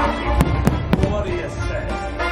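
Fireworks going off: three sharp bangs about a quarter second apart in the first half, over loud show music with deep bass.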